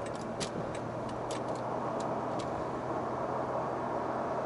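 Steady road and engine noise inside a moving car at highway speed, with a low constant hum. Several light, irregularly spaced clicks come in the first two and a half seconds.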